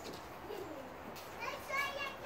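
Faint children's voices in the background: a brief call about half a second in and more talking from about a second and a half in, over quiet outdoor background.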